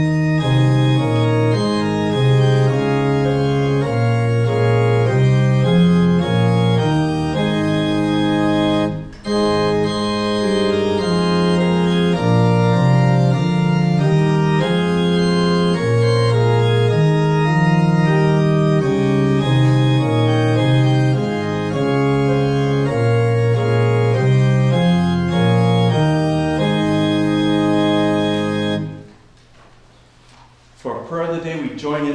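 Organ playing an offertory in sustained chords over a moving bass line. It breaks off briefly about nine seconds in and stops near the end.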